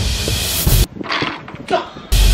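Wind rushing over the microphone for almost a second, cutting off abruptly, followed by a short vocal exclamation.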